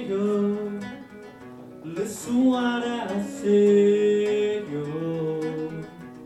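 Acoustic guitar being strummed along with a man's voice singing long held notes, with sharper strums about two and three seconds in.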